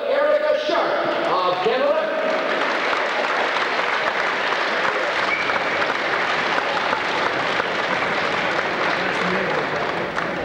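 Spectators clapping and cheering, with a few shouted voices in the first two seconds before it settles into steady applause.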